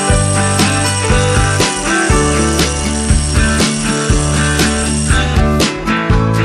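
Background music with a steady beat, bass and sustained instrument notes, with drum hits about twice a second.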